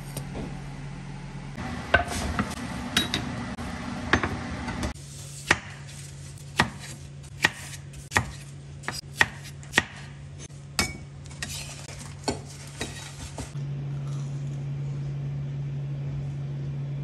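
Kitchen knife chopping tomato on a wooden cutting board: about a dozen sharp taps of the blade hitting the board, roughly one every half second to second, over a steady low hum.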